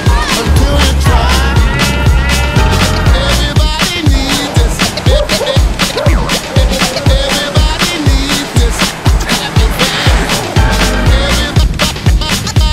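Background music with a fast, steady beat, heavy bass and gliding melodic lines.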